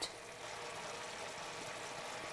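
Meat stock and juices boiling hard in a cast-iron skillet, a steady, fairly quiet bubbling sizzle as the jus reduces on high heat.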